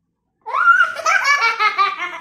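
A young child laughing loudly, a long run of quick high-pitched laughs that starts about half a second in.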